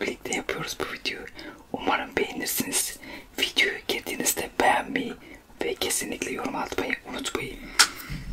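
Whispered speech in Turkish: a man talking softly close to the microphone, with sharp clicks between the words.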